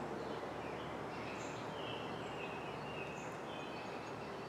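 Steady outdoor background hiss with a few faint bird calls about a second and a half in.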